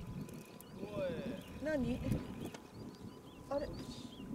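Birds calling: a few short wavering calls, about a second in and again near the end, over faint, high, repeated chirps.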